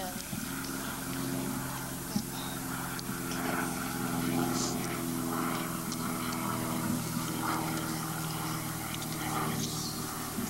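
A steady low drone or hum with a faint background haze and faint, indistinct voices.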